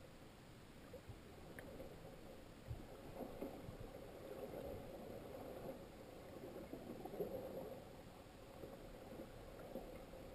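Faint, muffled underwater sound of moving water and bubbles heard through a camera's waterproof housing: an uneven crackling wash with a few dull knocks.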